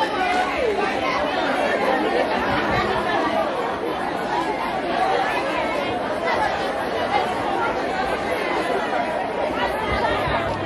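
Crowd chatter: many voices talking and calling out at once, overlapping so that no single voice stands out.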